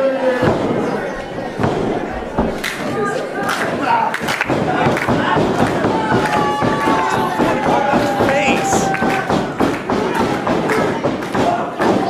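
Repeated thuds of bodies and feet hitting a wrestling ring's canvas mat, mixed with shouting voices from the crowd, one of them a long held call in the middle.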